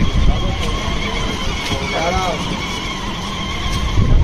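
Strong sea breeze buffeting the phone's microphone in a continuous low rumble, with voices of people around. A short pitched call, rising then falling, comes about two seconds in.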